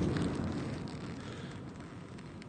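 Low rolling rumble of distant artillery fire, fading away gradually; it is taken for friendly counter-battery fire.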